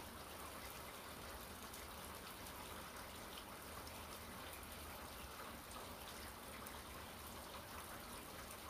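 Faint steady hiss of room tone, with no distinct sounds.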